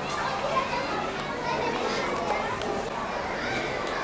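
A roomful of schoolchildren chattering at once: a steady hubbub of overlapping voices with no single speaker standing out.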